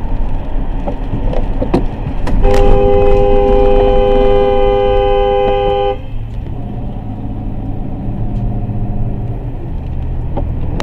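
A car horn sounds one long two-note blast lasting about three and a half seconds, starting a little over two seconds in. Under it runs the steady low rumble of road and tyre noise inside a moving car.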